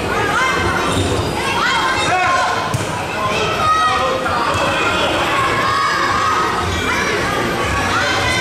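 Children shouting and calling during an indoor futsal game, with the echo of a large sports hall and the ball thudding on the wooden floor. One sharp kick stands out about three seconds in.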